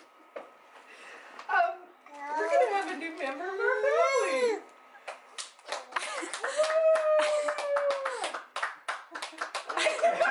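Toddler babbling and squealing in rising and falling glides, then paper crinkling and rustling as a gift is handled, with one long drawn-out vocal note in the middle of the rustling.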